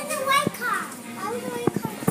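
Young children's voices: excited chatter and calls, with a few short knocks.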